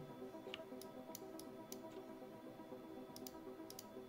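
Faint background music of sustained tones, with a dozen or so light clicks of a computer mouse and keyboard, some in quick clusters.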